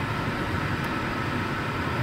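Steady low hum of a car's engine and cabin noise, heard from inside the car as it creeps up to a stop in traffic.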